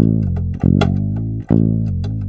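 Sampled electric bass in Kontakt, played from a MIDI keyboard: three sustained notes, each starting sharply and fading. It is a test of the controller's pitch bend and mod wheel, which work again.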